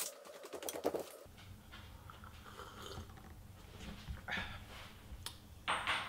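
Faint scattered clicks and rustles of someone moving about the house off-camera, with a low steady hum that comes in about a second in. A man's voice starts just at the end.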